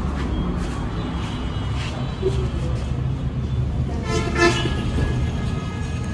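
Steady low rumble of road traffic, with a vehicle horn sounding for about a second around two-thirds of the way in.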